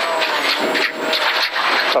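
Ford Fiesta 1.6-litre rally car heard from inside the cabin at speed on a gravel road: a dense, steady rush of gravel and tyre noise under the car over the running engine.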